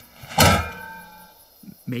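A single loud metallic clunk about half a second in, its ring fading away over about a second.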